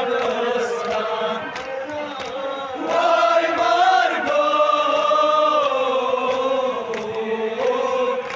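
Men chanting a Kashmiri noha, a lament for Zainab, led by one voice on a microphone with others joining in. The notes are held long in the middle. Sharp slaps come now and then, from chest-beating.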